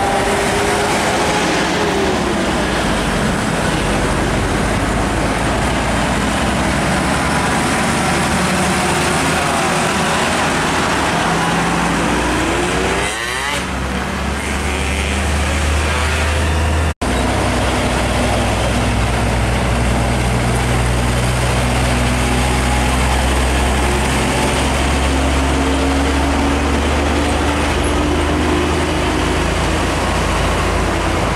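Diesel trucks and truck-and-trailer rigs driving past on a busy road, their engines running over tyre and traffic noise. Near the middle, a passing vehicle's engine note slides in pitch as it goes by. About 17 seconds in the sound breaks off for an instant at a cut.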